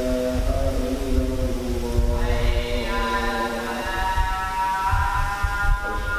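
Melodic chanting: a voice holds long, drawn-out notes that step up and down between pitches, over an uneven low rumble.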